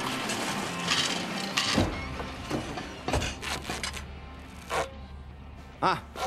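Animated-film sound effects of clinking dishes and metallic clanks, sharp knocks about a second apart, over faint music. A low steady hum comes in about two seconds in, and a voice cries out near the end.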